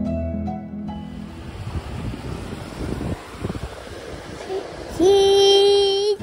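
Plucked, harp-like music stops about a second in and gives way to the steady wash of waves and wind at the shore. Near the end, a child's voice holds one long, loud note.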